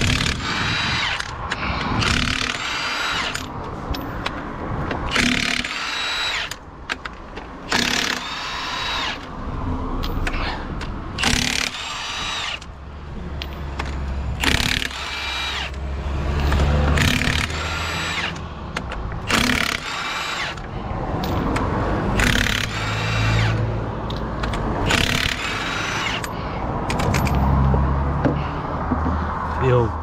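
Cordless Milwaukee impact wrench undoing the half-shaft nuts on a lorry's drive-axle hub so the half shaft can come out. It hammers in short bursts, one after another roughly every second or so.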